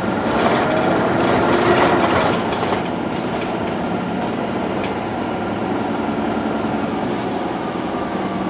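TTC CLRV streetcar running along its track, heard from inside the car: an even rumble of wheels on rail with a faint steady motor hum. The first two or three seconds are louder, with some tones gliding up and down, before it settles.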